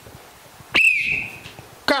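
A single short, high whistle: a quick upward sweep, then a held note that slides slightly lower and fades within about two-thirds of a second.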